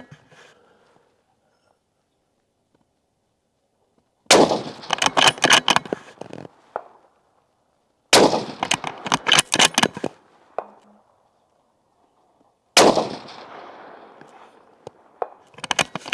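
Three shots from a 6.5 PRC rifle, about four seconds apart, each followed by a couple of seconds of echo.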